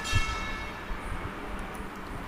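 A short ringing tone that fades out within the first second, with a low thump just after it begins, over steady microphone hiss and hum.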